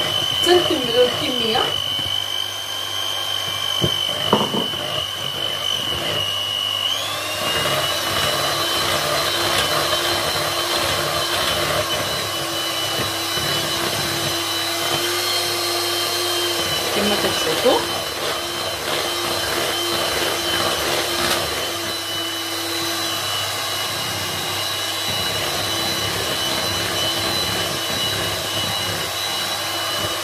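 Electric hand mixer running steadily, its beaters whirring through thick cake batter in a plastic bowl. Its steady whine steps up in pitch about seven seconds in.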